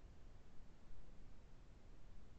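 Faint room tone: a steady low rumble and hiss with no distinct sounds.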